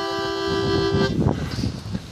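Harmonica holding a steady chord, several reed notes sounding together, which stops about a second in and is followed by low, uneven noise.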